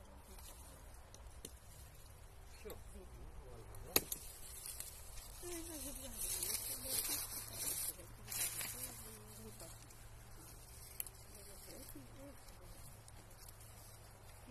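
A single sharp snip, about four seconds in, of pruning shears cutting an olive branch, then a few seconds of rustling olive leaves and twigs as the branch is pulled and handled. A second, fainter click comes near the end.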